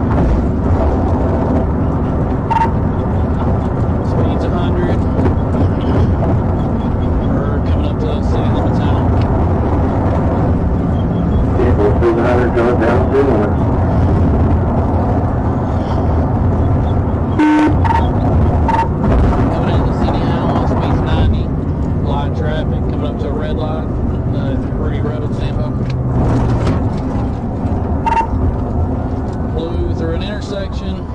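Patrol car's engine, tyres and wind heard from inside the cabin at pursuit speed, a loud steady rush that eases in the last several seconds as the car slows. Short clicks and a few brief beeps cut through it.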